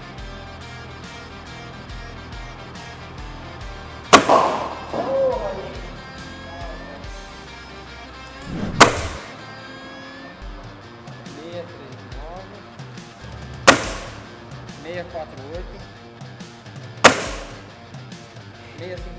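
Four shots from a Gamo Whisper Fusion IGT 5.5 mm gas-ram air rifle with an integrated suppressor, each a sharp crack, roughly four to five seconds apart. Background music with a steady beat plays underneath.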